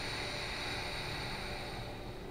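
A person's long, steady breath, heard as an even hiss that stops near the end, over a low steady hum.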